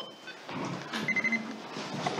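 A single short electronic beep about a second in, one steady high tone lasting about a third of a second, over low room noise.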